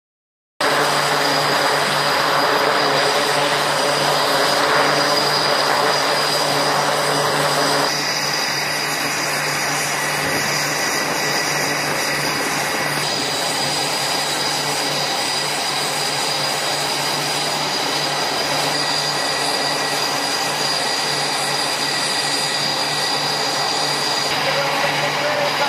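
Jet engine noise on an aircraft carrier flight deck during flight operations: a steady running sound with a high whine over a low hum. The mix shifts abruptly about 8 and 13 seconds in.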